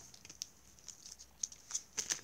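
Football trading cards and their packet wrapper being handled: a few faint, scattered crinkles and card flicks.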